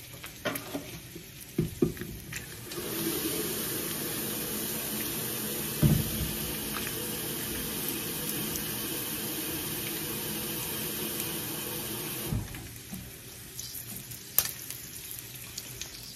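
Kitchen tap running into a watering jug, a steady rush of water that starts about three seconds in and is shut off about twelve seconds in, with a knock partway through.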